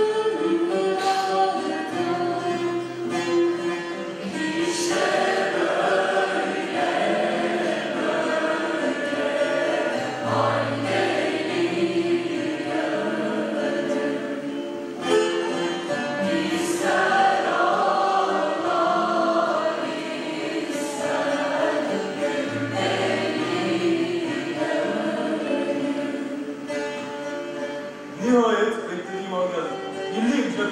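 A choir singing, with instruments accompanying.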